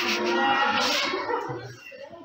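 A high-pitched, drawn-out vocal sound lasting about a second and a half, then fading.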